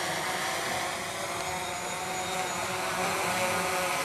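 Steady outdoor background noise: an even, hiss-like rush with faint held tones over it. No distinct event stands out.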